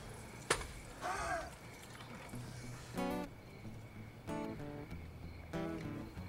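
Acoustic guitar strummed in single chords, about three seconds in, again about a second later, and once more near the end, each ringing briefly. A sharp click about half a second in.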